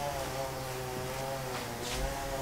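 A steady low hum, like a distant motor, with a short scratchy rustle near the end as the wire mesh is handled.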